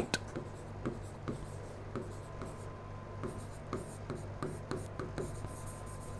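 Stylus writing on a digital board: faint irregular taps and short scratching strokes as words are written, over a faint steady hum.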